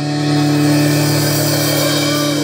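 The last chord of a rock song held and ringing out: an amplified acoustic guitar chord sustained steadily through a PA speaker, with cymbal wash fading above it.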